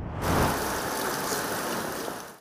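Rumbling whoosh of a TV news logo transition sound effect, swelling in the first half second and then holding steady.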